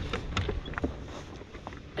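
Water splashing and lapping in small, irregular splashes as a musky is held by hand in the water, being readied for release.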